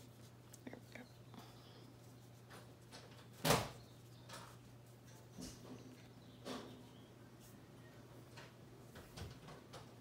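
Faint rustling and rubbing of thick twisted cotton macrame cord as it is pulled through and tied into half hitch knots, with one sharp knock about three and a half seconds in, over a steady low hum.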